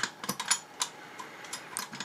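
A few light, irregular metallic clicks and taps as a metal 120 take-up spool is worked into the top spool chamber of a Rolleiflex Old Standard camera.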